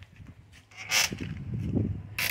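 Rope rasping as it is pulled tight over a load of plastic-wrapped doors, with a short sharp scrape about a second in and rougher handling noise after.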